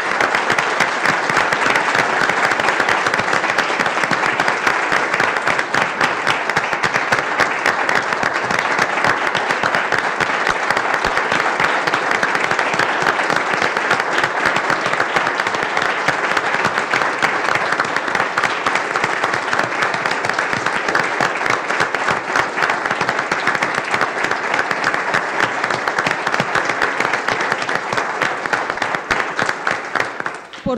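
An audience applauding: dense, steady clapping from a roomful of people.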